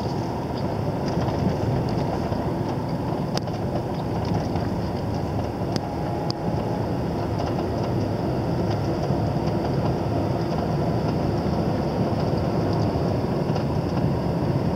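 Steady road noise from inside a moving car's cabin: tyre and engine rumble, with a few brief ticks about a third of the way in and near the middle.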